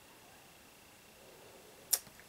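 Quiet room tone with a faint, steady high-pitched whine, then one short, sharp click near the end.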